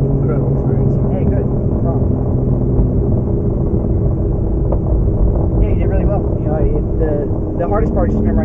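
Ferrari 458's mid-mounted V8 engine heard from inside the cabin, a steady low drone while the car moves slowly, with its note shifting near the end.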